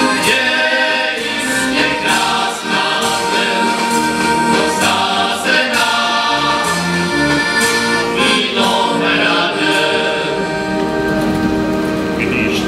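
Moravian men's folk choir singing in close harmony with accordion accompaniment.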